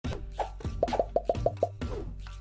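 Animated logo intro music starting suddenly, with a quick run of short, bubbly pops about a second in.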